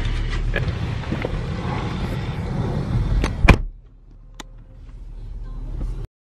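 Movement and handling noise inside a car, then a car door shutting with one loud thud about three and a half seconds in. After that it is quieter, with a single light tick and a low hum growing louder until the sound cuts off.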